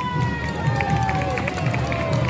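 A voice over loudspeakers holding one long drawn-out call whose pitch slides slowly downward, over the noise of a street crowd.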